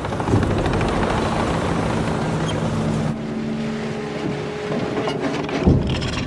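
Tank running, a steady, noisy engine rumble with a few held low tones, and a heavy low thump near the end.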